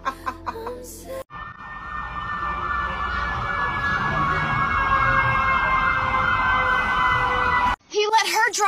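Brief laughter, then a siren-like wailing, warbling tone over steady high tones. It grows louder for about six seconds and cuts off suddenly.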